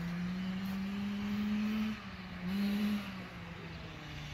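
A small engine running with a steady note that rises slowly as it is revved, eases off about two seconds in, then picks up again briefly.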